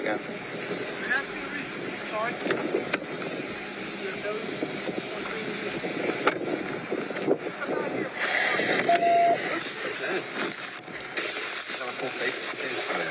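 Body-camera audio of a patrol car's trunk being opened and gear inside it being handled, under muffled voices, with a few sharp clicks.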